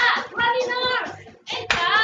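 Workout music with a voice singing over it, with two sharp claps: one at the start and one near the end.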